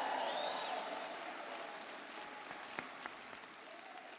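A large audience applauding, loudest at the start and gradually dying away.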